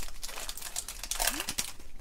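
Foil wrapper of a Pokémon 151 booster pack crinkling in the hands as the opened pack is handled and its cards pulled out: a quick run of small crackles.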